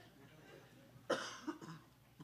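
A person coughing: one sharp cough about a second in, then a smaller one just after.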